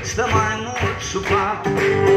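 A man singing to his own strummed acoustic guitar. Near the end the voice stops and the guitar chords ring on steadily.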